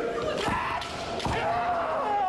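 Kendo bout in a large hall: two sharp knocks about a second apart from bamboo shinai strikes, over the fighters' shouted kiai, one drawn out into a long call near the end.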